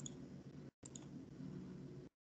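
A few faint computer mouse clicks, a pair right at the start and more about a second in, over a low hum of line noise that cuts out abruptly twice.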